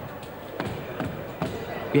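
A run of dull thuds at fairly even intervals, about two a second, over faint background chatter of voices.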